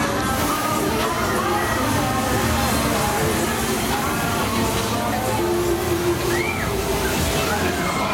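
A fairground ride's smoke machine jetting fog with a steady hiss from just after the start, over ride music and voices.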